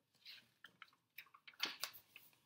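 Pages of a thin paperback picture book being turned and handled: a few soft paper rustles and crinkles, the loudest near the end.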